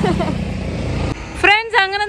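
Motorcycle engine idling steadily beneath a voice. The engine sound cuts off abruptly about a second in, and speech follows.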